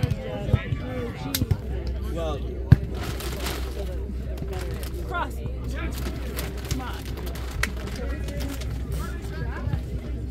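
Sharp slaps of hands and forearms hitting a volleyball during a rally, several over the stretch, the loudest about three seconds in, over scattered voices and a low steady rumble.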